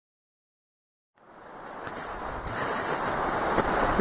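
Dead silence at first; a little over a second in, wind rumbling and buffeting on the microphone fades in and grows steadily louder.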